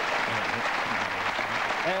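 Studio audience applauding with steady clapping, while a man's voice speaks briefly under it.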